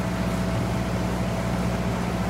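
Motorboat engine running steadily: a low hum with a thin steady whine, over a steady rushing hiss.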